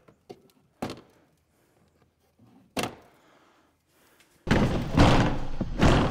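Plastic clips on a CFMOTO ATV's plastic body panel being pried loose with a screwdriver: a few separate sharp clicks and knocks over the first three seconds. About four and a half seconds in comes a louder, longer stretch of plastic scraping and rattling as the panel is worked free.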